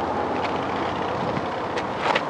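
Steady rushing wind on the microphone, with two short crunches of shoes on gravel: one about half a second in, one near the end.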